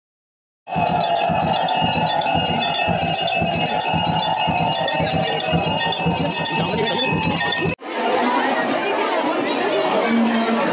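Metal temple bells ringing rapidly and continuously over a crowd, starting about a second in. Near the end the sound cuts off abruptly to crowd chatter.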